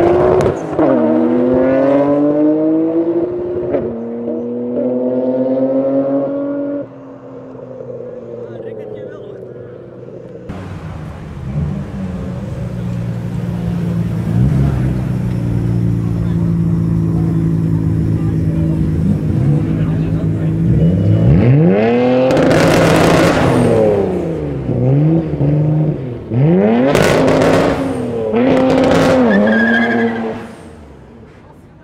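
Skyline GT-R engines accelerating hard, pitch climbing and dropping through several gear changes. Then, echoing in a concrete tunnel, the R33 GT-R's twin-turbo RB26DETT straight-six idles and is revved sharply several times through its titanium exhaust.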